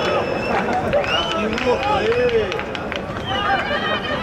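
Football players calling and shouting to one another on the pitch in short, separate calls, over a low murmur of a small crowd.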